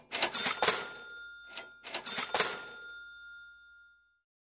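Cash register 'cha-ching' sound effect, played twice about two seconds apart: each time a short metallic clatter followed by a bell tone that rings out and fades.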